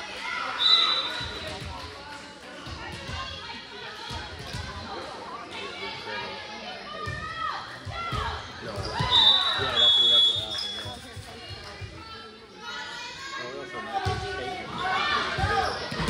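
Indoor volleyball rally: repeated sharp thuds of the ball being struck and hitting the court, with a few short high-pitched squeaks and players' voices calling out.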